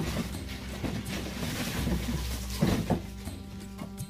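Background music with held notes, with a short rustling noise about two and a half seconds in.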